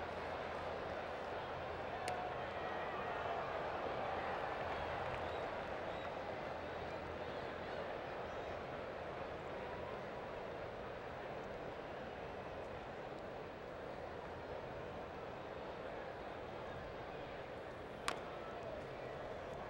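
Steady murmur of a ballpark crowd, with a single sharp click about two seconds in.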